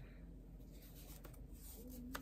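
Faint rubbing and scratching of fingertips on a mesh wig cap being adjusted on the head, with a few faint clicks past the middle.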